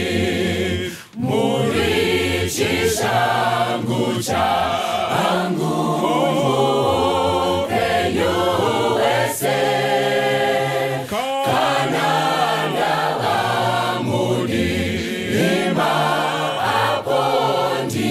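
Mixed-voice choir of young men and women singing together in harmony, with a short break about a second in.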